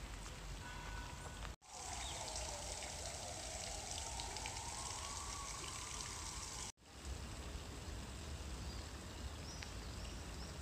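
Splashing and trickling water from a tiered stone garden fountain falling into its pool, a steady hiss of water between two abrupt edit cuts, with quieter outdoor ambience before and after.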